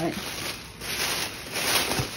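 Tissue paper rustling and crinkling as it is pulled open from around a wrapped T-shirt, in a few soft bursts, the loudest near the end.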